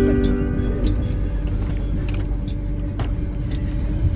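Passenger train running on its rails, heard from inside the carriage: a steady low rumble with scattered sharp clicks. A few held notes of music sound at the start and fade out about a second in.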